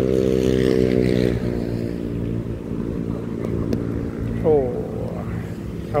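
An engine running nearby with a steady hum, its pitch sinking a little over the first second and a half and then holding.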